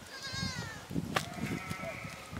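Sheep bleating: a quavering bleat in the first second, then a second, steadier bleat in the latter half.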